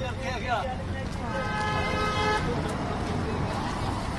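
A vehicle horn sounds once for about a second, around the middle, over a steady background of traffic rumble and voices.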